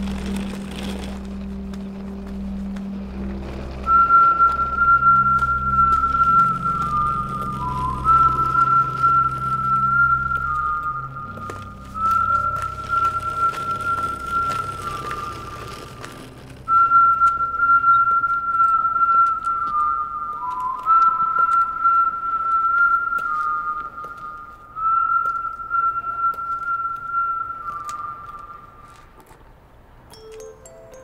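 A slow tune whistled as one clear line of held notes that step down and back up, in two long phrases, the second starting about halfway through. Under the first part a low music drone sounds, and it fades as the first phrase goes on.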